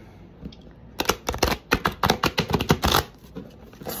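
Rider-Waite tarot cards being thumbed through by hand: a quick run of crisp card snaps lasting about two seconds, starting about a second in.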